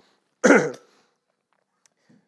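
A man clearing his throat once, short and loud, with a falling pitch.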